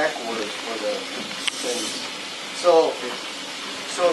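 Indistinct talking by people close by, over a faint steady hiss, with a single sharp click about one and a half seconds in.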